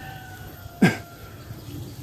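A single short vocal sound with a falling pitch, about a second in, over a steady low background hum.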